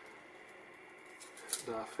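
Quiet room tone with a few faint light clicks and rustles of small kit parts and wires being handled, followed by a man's voice near the end.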